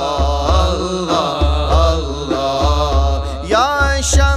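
Sufi devotional song: a voice holds long, wavering melismatic notes over a deep, pulsing bass.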